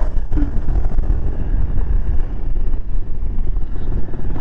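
Supermoto motorcycle engine pulling under throttle, with heavy low wind rumble on a helmet-mounted microphone, as the bike lifts into a wheelie.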